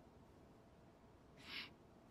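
Near silence, with one faint, short breath-like hiss about one and a half seconds in.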